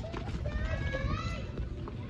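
Several people's high-pitched voices chattering in short phrases, over a steady low rumble.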